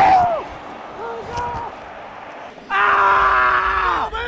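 A man's voice cries out briefly at the start, then near the end a man lets out one long, steady yell held for more than a second, with a low rumble beneath it.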